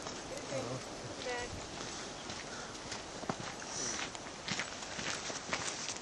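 Footsteps on a gravel path, irregular short crunches, with a short pitched call about a second and a half in.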